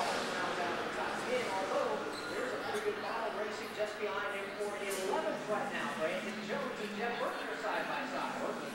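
Indistinct chatter of several people talking in a room, with no words clear enough to make out.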